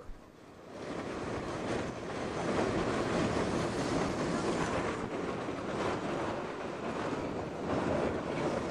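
Steady rushing rumble of a steam-hauled excursion train's coaches rolling along the track, heard from an open car, with wind blowing across the microphone. It swells in about a second in.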